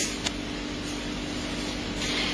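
Steady background hiss with a faint low hum, and one short click about a quarter second in.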